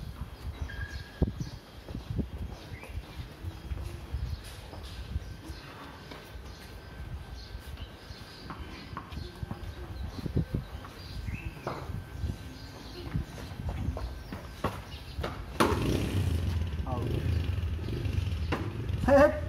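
Outdoor background of faint voices with scattered short knocks over a steady low rumble; near the end a louder low engine rumble comes in.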